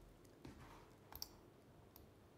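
Near silence with a few faint computer clicks: one about half a second in and a quick pair just after a second.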